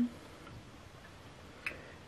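Quiet room tone with a single short click about one and a half seconds in.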